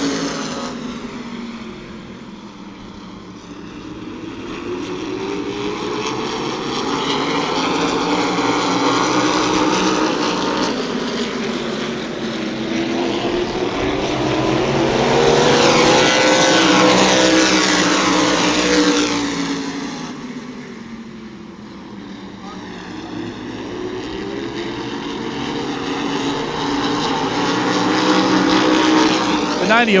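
A pack of open-wheel modified race cars running at racing speed around a short oval, their engine note swelling and fading with each lap. It is loudest about halfway through as the cars pass close by, the pitch dropping as they go, and it builds again near the end.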